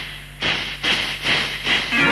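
Hissing, cymbal-like percussion strokes keeping a steady beat, a little over two a second, each sharp at the start and quickly fading, in a gap between sung lines over a faint steady drone.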